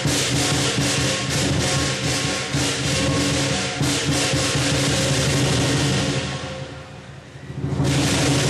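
Lion dance percussion: a rapid run of clashing cymbals over the drum, with steady ringing underneath, played for a southern lion dancing on poles. The playing dies away about six seconds in, and a loud new crash comes just before the end.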